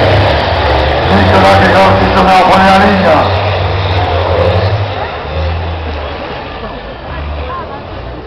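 Race trucks' engines running as they pass on a dirt track and move away, the sound fading over the second half. A loudspeaker announcer's voice runs over the first few seconds.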